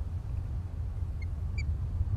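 Wind buffeting the nest-cam microphone as a steady low rumble, with two brief high chirps a little past the middle.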